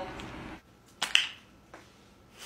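Two sharp clicks in quick succession about a second in, the tail of music fading out just before them.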